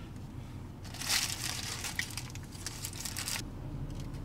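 Paper sandwich wrapper crinkling as a burger is handled, from about a second in until a little after three seconds.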